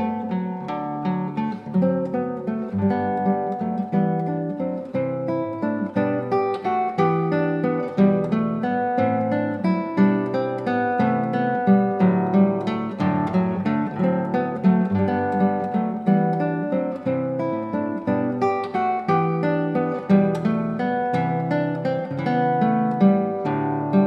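Solo nylon-string classical guitar played fingerstyle: a continuous flow of plucked melody notes over a moving bass line.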